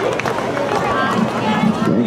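Spectators chatting, several voices overlapping with no single clear speaker.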